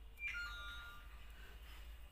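A brief ringing tone of a few steady pitches, starting suddenly a quarter second in and fading out within about a second, over a faint low hum.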